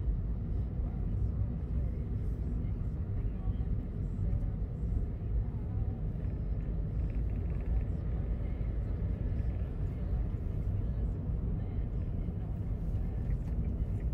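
Steady low rumble of a car's engine and tyre noise, heard from inside the cabin while driving.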